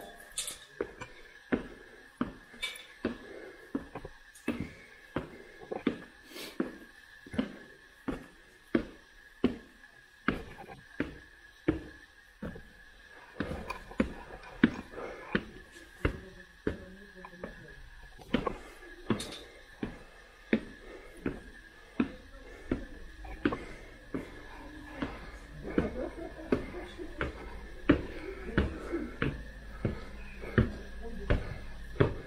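Footsteps climbing steps at an even pace of about two a second, each one a sharp knock. A faint steady high whine runs underneath, and faint voices come in near the end.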